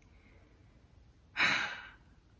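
A woman's single breathy sigh, a short exhale about one and a half seconds in, against quiet room tone.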